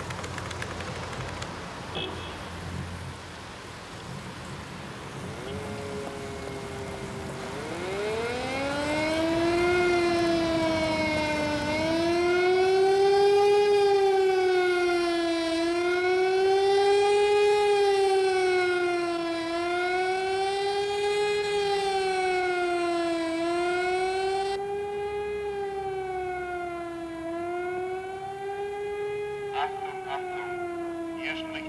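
Civil-defence warning siren starting up about six seconds in, climbing steeply in pitch, then wailing up and down over a low city traffic rumble. The rising-and-falling wail is the public warning signal, here raised over a nuclear reactor accident.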